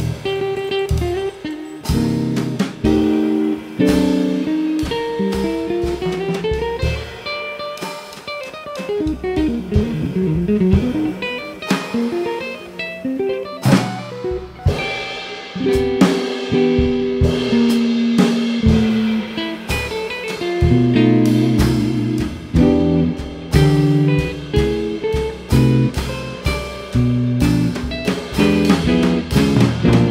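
Live jazz duo of electric guitar and drum kit: the guitar plays single-note lines and chords while the drums and cymbals accompany. About eight seconds in, a run of guitar notes slides up and down in pitch.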